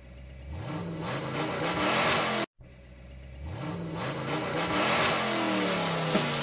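A car engine accelerating twice, each run starting quiet and climbing steadily in pitch and loudness, with a short break between the two. It is a recorded engine sound effect between the song's lyrics, not a live car.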